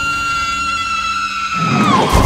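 A high, sustained shriek-like tone from a horror trailer's sound mix: held steady, then sliding down in pitch near the end. A low rumble swells in under it in the last half second.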